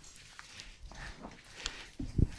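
Quiet room with faint rustling and a few small clicks, a sharper click near the end.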